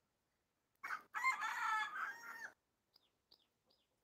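A rooster crowing once, starting about a second in and lasting about a second and a half. Near the end a small bird gives short high chirps, two or three a second.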